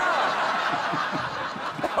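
Studio audience laughing steadily, with a man's short 'oh' exclamations at the start and near the end.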